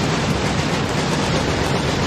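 Stage pyrotechnics, spark fountains and smoke jets, firing with a loud, steady rushing hiss.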